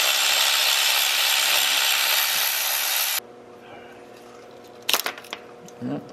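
Power ratchet running in one steady burst of about three seconds, then stopping suddenly, as it backs out the 10 mm bolts holding a Honda S2000's VTEC solenoid. A single sharp click follows about five seconds in.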